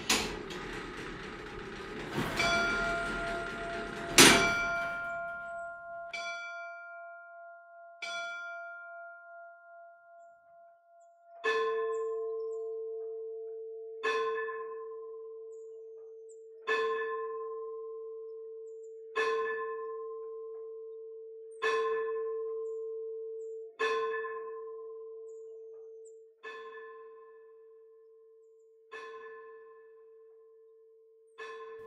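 Church bell tolling. A few loud clanging strokes ring out in the first few seconds. Then, from about a third of the way in, a single bell is struck steadily about every two and a half seconds, each stroke ringing and dying away.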